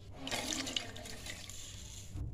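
A wet handful of food dropped into the hot liquid in an aluminium pressure cooker: a watery splash and sloshing, loudest about half a second in, with a sharp tick partway through, then fading.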